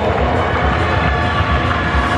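Music over an arena's public-address system, a low beat under a dense wash of sound, echoing in a large indoor hall.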